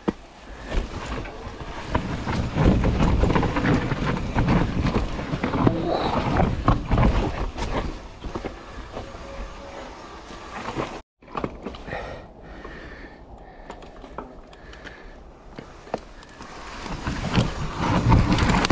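Mountain bike riding down a rocky, leaf-strewn trail: tyres rolling over dry leaves and rock, with a constant clatter of clicks and knocks from the bike. It is loudest in the first half, drops away abruptly about eleven seconds in, resumes more quietly and builds again near the end.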